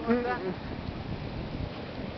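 Ocean surf washing up a sandy beach, a steady rushing noise.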